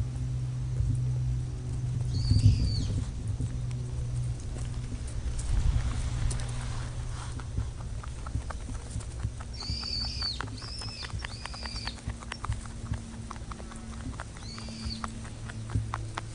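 Rabbit chewing dry hay, a fast run of crisp crunching clicks that starts about halfway through. A bird calls with short high chirps several times, and a low rumble with a few thumps fills the first half.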